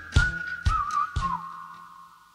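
A whistled melody ends the song. It holds a high note, with a brief trill and a falling slide, over the last three beats about half a second apart, and then dies away.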